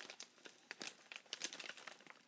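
Plastic bag of tea lights crinkling faintly as it is handled and turned over, in irregular small crackles.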